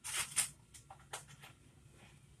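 Several short rustles and clicks of something being handled, loudest in the first half second, with a few fainter ones about a second in.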